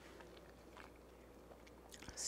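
Near silence, with faint mouth sounds of a person chewing a bite of pie.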